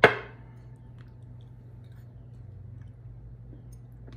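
Quiet room with a low steady hum and a few faint ticks, after a short sharp sound right at the start.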